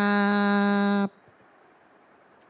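A voice intoning the Thai prostration call 'kraap' ('bow down'), held on one long steady pitch and ending a little over a second in, after which it goes quiet.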